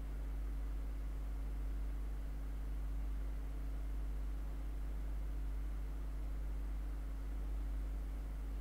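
Steady low electrical hum with a faint even hiss: the background noise of the recording, with no other sound standing out.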